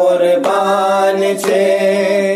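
Devotional chant in praise of Husain, sung by voice without instruments in long, steady held notes.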